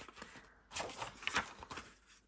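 Faint rustling and a few light taps of paper being handled as a photo print is laid onto a patterned paper page and pressed flat by hand.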